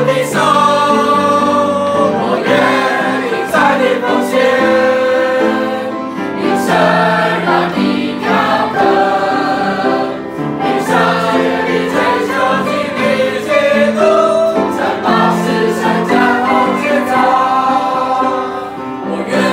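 A mixed group of young men and women singing a Mandarin Christian hymn together.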